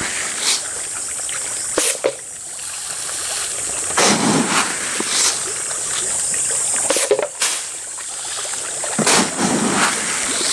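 Tilapia splashing at the pond surface as they snap up thrown feed, in irregular splashes every second or two over a steady high-pitched background hiss.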